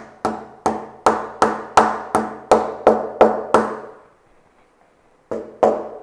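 Small plastic-headed mallet tapping a glued, tapered wooden plug into a screw hole in mahogany: about a dozen quick, ringing knocks, roughly three a second, then a pause and two more knocks near the end.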